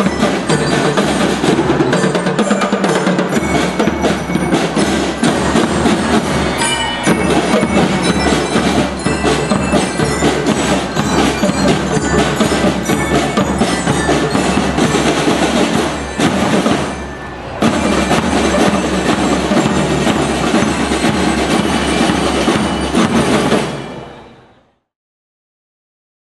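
School drum and lyre band playing: snare and bass drums beating a marching rhythm while metal bell lyres ring out the melody. The sound dips briefly about two-thirds of the way through, then fades out at the very end.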